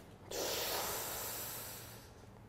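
A man's long, audible breath, starting about a third of a second in and fading away over about a second and a half.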